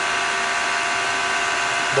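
Steady cabin noise of a car being driven: a constant hum and hiss with a steady motor-like whine running through it.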